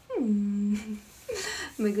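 A woman humming "mmm": her voice slides down in pitch, then holds one low steady note for about a second. A second short voiced sound follows, and she starts speaking near the end.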